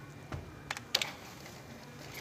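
A few sharp clicks and taps, about three in the first second, from a supermarket checkout register as the cashier handles the goods, over a low steady store hum.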